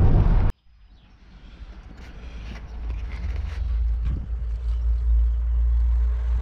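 Low road rumble inside a moving van's cabin, cut off abruptly about half a second in. After a moment of silence a low steady rumble fades in and grows louder.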